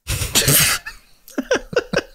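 A man's burst of laughter: a breathy, cough-like outburst, then a few quick, short pitched bursts near the end.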